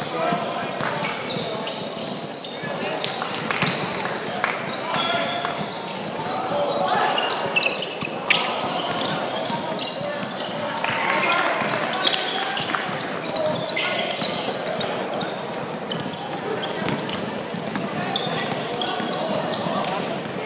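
Live indoor basketball game sound: a basketball bouncing on a hardwood court, with short sharp knocks and squeaks, under the calls and chatter of players and spectators, echoing in a large gym hall.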